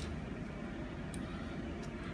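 Steady low room hum and hiss, with two faint ticks a little after one second and near the end.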